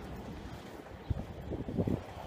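Low rumble of wind on a handheld phone's microphone, with a short knock about a second in and a few low bumps near the end.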